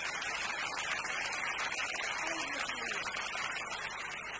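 Theatre audience applauding: a steady, dense clapping from a large crowd, a standing ovation. A voice is faintly heard through it about two seconds in.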